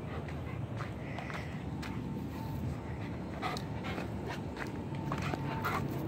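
A dog panting close to the microphone, with footsteps and scattered small clicks on dirt and grass.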